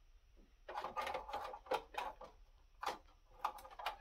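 Rapid clicks, scrapes and rattles of a Tesla M40 card and its riser being worked into the slot of a Dell PowerEdge R730 server chassis, metal and plastic knocking as the card is lined up. The clatter starts about a second in after a near-silent moment.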